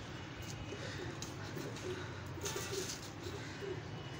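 Domestic pigeons cooing faintly: several low, wavering coos.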